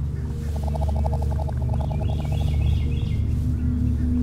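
Steady low drone of a film score with held tones above it. From about half a second in, a rapid pulsed trill lasts a couple of seconds, with a few high bird-like chirps over its second half.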